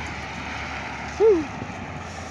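Steady road traffic noise from cars and trucks passing on a boulevard. About a second in there is one short, louder, falling pitched sound.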